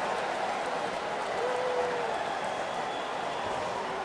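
Hockey arena crowd noise, a steady hubbub just after a goal, with one voice briefly holding a note about a second and a half in.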